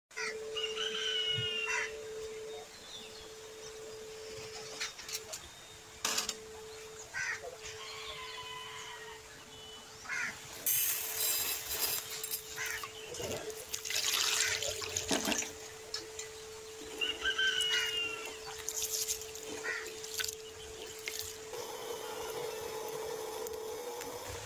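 Short bird calls, one around the first couple of seconds and another about two-thirds of the way in, over a steady low hum. There are bursts of rustling hiss in the middle.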